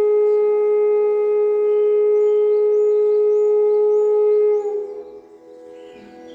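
E-base bansuri (bamboo transverse flute) holding one long, steady note for about four and a half seconds, then bending down briefly and falling away near the end.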